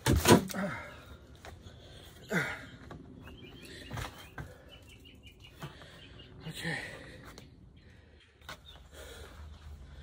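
Plywood panels of a raised garden bed being handled: a loud knock with a scraping creak right at the start, another creak a couple of seconds in, and a sharp knock about four seconds in. Small birds chirp faintly in the background.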